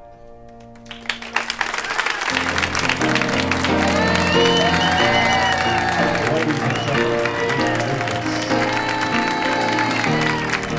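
The last piano chord of the song fading away, then audience applause breaking out about a second in. About two seconds later, instrumental music with a bass line starts up under the clapping.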